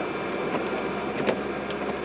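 Steady road and engine noise heard inside a moving car, with two faint clicks a little past the middle.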